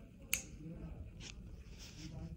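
Small steel nippers snipping through thick callus over a diabetic foot ulcer: a sharp snip about a third of a second in, then two fainter ones.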